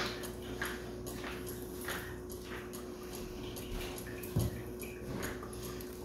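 Faint scrapes and soft taps of a metal spoon scooping sunflower butter out of a jar into a measuring cup, with a low thud about four and a half seconds in, over a steady faint hum.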